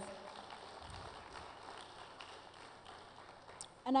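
Audience applauding faintly, the clapping dying away over a few seconds.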